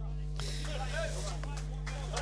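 Indistinct voices that start about half a second in, not clear enough to make out words, over a steady low hum.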